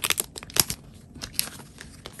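Paper and plastic packaging rustling and crinkling as it is handled, with a cluster of sharp crackles in the first second and another near the middle.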